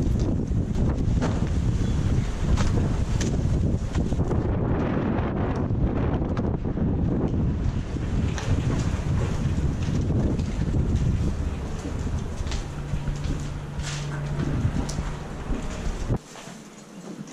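Wind buffeting the microphone in a steady low rumble. Footsteps on rubble and debris make scattered short ticks.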